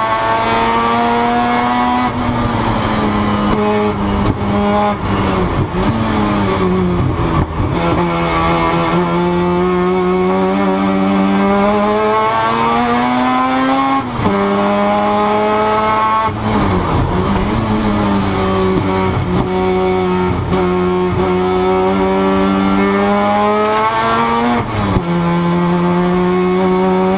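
Mazda RX-7 FD race car's 13B rotary engine at racing pace, heard from inside the cockpit. It holds high revs with long, slow climbs in pitch. Several sudden drops in pitch, each followed by another climb, mark gear changes and lifts for corners.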